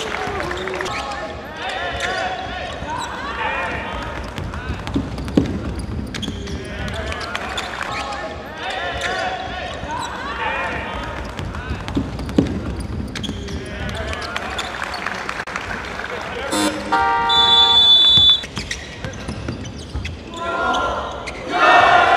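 Basketball game sound on a hardwood court: a ball bouncing and voices on and around the court, with a couple of sharp knocks. About three quarters of the way through, an electronic game buzzer sounds loudly for about a second and a half.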